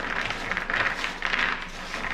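Cashews being mixed by hand on a metal baking sheet, the nuts clicking against the pan in many quick, overlapping clicks.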